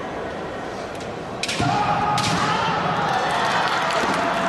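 Kendo strike: sharp cracks of bamboo shinai and a thud of a stamping foot on the wooden floor about one and a half seconds in, with another crack a little later. A fighter's long kiai shout starts with the strike.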